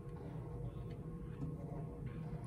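Felt-tip marker drawing curved strokes on paper, faint, over a steady low room hum.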